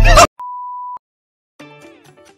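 Loud background music cuts off abruptly, then a single steady electronic beep lasts about half a second. After a short silence, quieter background music starts near the end.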